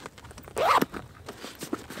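Zipper on a fabric hip pack being pulled open, one quick rasping pull about half a second in, followed by faint rustling of the bag's fabric.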